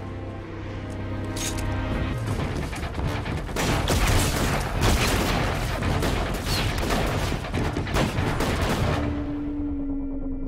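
Film soundtrack: the music score holds sustained notes, then from about two seconds in there is rapid, continuous handgun fire from several guns, mixed over the music. The shooting stops near the end and a single held note of music remains.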